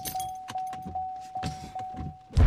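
Car warning chime ringing steadily, repeating about two and a half times a second: the alert that the car has not been shifted into park. A few clicks and a jingle of keys come over it.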